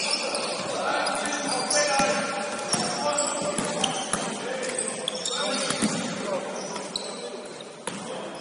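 Basketball bouncing a few times on a wooden sports-hall court amid sneakers squeaking and players calling out, all echoing in the large hall.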